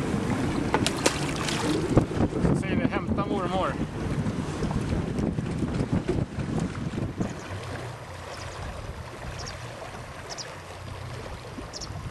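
Wind buffeting the microphone and water slopping against the side of a small boat, with a few splashes and knocks in the first couple of seconds as a pike is let go into the water; the sound settles lower from about halfway through.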